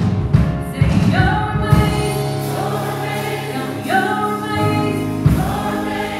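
Gospel choir singing in full voice with a live band, holding long chords over bass and drums.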